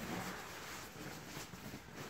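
Synthetic-fill sleeping bag's shell fabric rustling as it is pulled and bundled by hand, a steady soft rustle.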